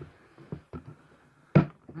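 A few faint clicks and taps of a plastic tackle box being handled, then a sharper knock about one and a half seconds in.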